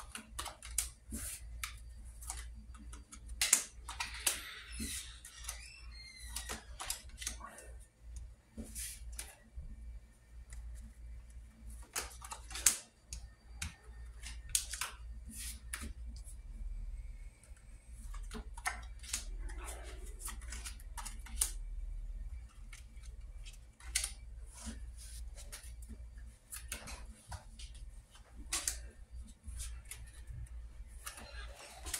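Playing cards being dealt one at a time onto a desk mat: a run of short, sharp clicks and slaps as each card comes off the deck and lands, with the deck being handled between them.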